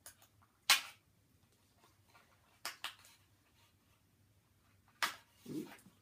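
Scissors snipping the plastic ties that hold a toy to its card packaging: one loud sharp snip under a second in, two quick ones near the middle and another near the end, with quiet in between.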